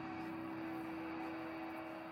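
A steady hum: one held tone over a faint even hiss.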